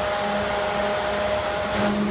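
Fan-type snowmaking gun running: a steady rushing hiss of blown air and spray with a steady hum under it.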